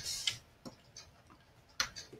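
A few faint clicks from computer input devices, the sharpest one near the end, after a short hiss at the start.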